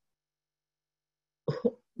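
Silence, then near the end a person's short cough in two quick bursts.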